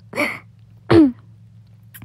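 A woman's short wordless vocal sounds: a breathy burst right at the start, then a short voiced sound falling in pitch about a second in.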